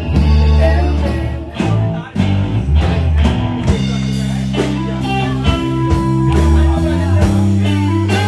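A live rock band playing in a small room: electric guitar, bass guitar and drum kit. About two seconds in the music breaks off briefly and picks up again, where one performance clip joins the next.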